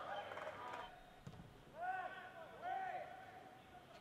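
Two faint, short calling voices, about two and three seconds in, over low steady background noise.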